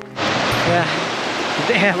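Steady rush of a river running over rocks, cutting in abruptly just after the start, with a man's voice coming in over it in the second half.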